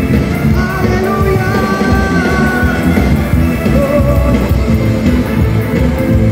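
Live band playing amplified music through PA speakers, with drums, electric guitars and keyboards, and long held notes in the melody that sound sung.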